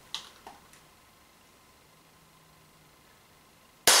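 Two faint handling clicks, then, just before the end, a single loud sharp shot from an Umarex Walther PPQ M2 CO2 pistol firing a .43-calibre ball into a tin can at close range.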